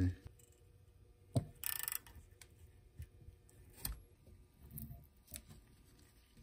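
A few light clicks and one short rasp a little under two seconds in, from handling a stainless hose clamp and the exhaust heat wrap on a turbo manifold.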